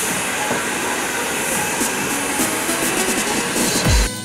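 A steady, loud rushing noise of a machine running, with faint voices under it. A music track's deep bass drum comes in right at the end.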